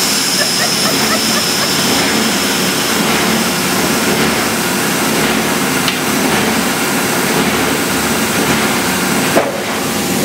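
Steady, loud din of plastic molding machines running on a factory floor, with a high whine that fades out over the first few seconds. Near the end there is a short sharp sound and the noise briefly drops.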